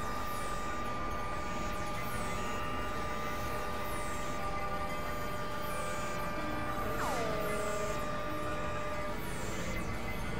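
Experimental electronic drone music from synthesizers: a steady held tone over a dense noisy haze, with short high falling sweeps that recur throughout. About seven seconds in, a tone drops quickly in pitch and settles into a held note.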